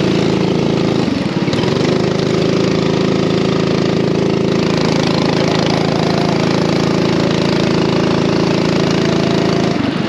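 Racing kart engine running hard at high revs, a steady buzzing note. About a second in, the note briefly drops and wavers before picking back up, and it dips again right at the end.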